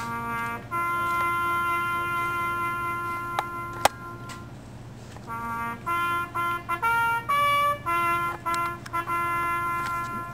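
Solo trumpet playing a bugle call: two short notes, then a long held note, then after a brief lull a run of shorter notes stepping up and down in pitch. A single sharp click sounds about four seconds in.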